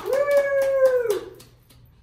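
A woman's drawn-out, high cheer, held steady for about a second and falling away at the end, over a few people clapping. The clapping dies out about a second and a half in.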